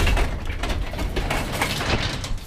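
Paneled sectional garage door being lifted open by hand, rumbling and clattering with a rapid run of small clicks as it rolls up its tracks.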